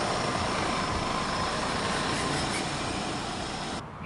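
A car running with a steady rushing sound, which cuts off abruptly near the end.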